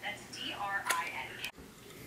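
A brief, soft voice sound with a couple of small clicks, cut off sharply about one and a half seconds in.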